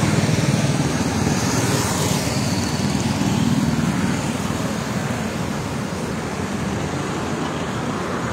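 Steady road traffic on a busy highway: cars and motorbikes running past, engine hum and tyre noise blended together, easing slightly in the second half.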